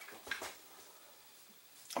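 A light knock on the workbench about a third of a second in, as the rifle is settled on the padded bench mat, then near silence with faint room tone until a voice starts at the very end.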